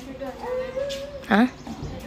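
A high, drawn-out vocal sound held for most of a second, followed by a short, loud questioning 'Hah?'.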